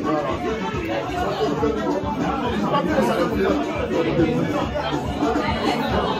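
Indistinct chatter: several voices talking continuously, with music playing underneath.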